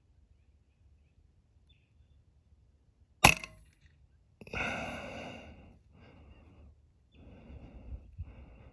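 A single suppressed shot from an FX Wildcat .22 PCP air rifle a little after three seconds in, a sharp crack that is the loudest sound, followed about a second later by a longer breathy sound and some softer noise.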